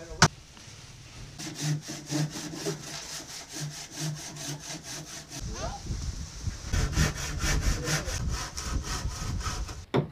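The wood of a boat hull being worked by hand in quick, even back-and-forth strokes, like a hand saw or plane. There is a short pause near the middle, and after it the strokes come faster and louder.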